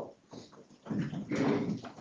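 Near quiet for about a second, then office chairs being pulled out and creaking, with shuffling, as several people sit down at a table.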